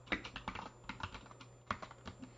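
Typing on a computer keyboard: a quick, irregular run of keystrokes, with a sharper stroke just after the start and another near the end.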